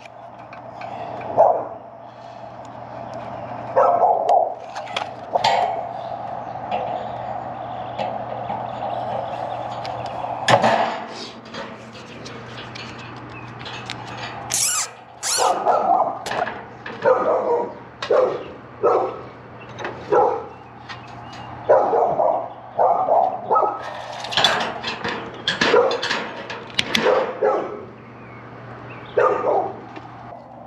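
A dog barking over and over in short barks that come in clusters, with a steady low hum underneath.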